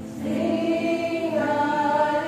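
Several voices singing a worship hymn together, coming in about a quarter second in and holding long notes.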